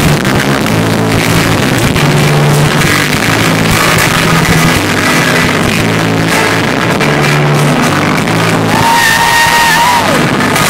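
Loud rock music playing over a concert PA, heard from within the crowd: steady bass notes throughout, with one long held higher note near the end.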